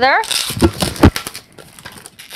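Latex 260 modelling balloon being handled and twisted, with a rustling rub of the rubber and two dull knocks about half a second and a second in as two small bubbles are twisted together.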